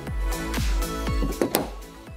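Background music with a deep, repeating bass line.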